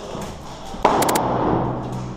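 Airsoft gunfire: a sudden loud bang a little under a second in, then a quick run of about four sharp shots, ringing on in a bare block-walled room.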